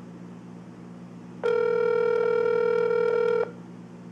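Telephone ringback tone heard through a smartphone's speakerphone: a single steady ring lasting about two seconds, starting about a second and a half in, as the transferred call rings at the other end. A low steady hum runs underneath.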